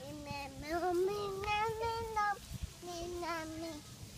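A young girl singing two long drawn-out phrases without clear words, the first climbing in pitch and the second held steadier.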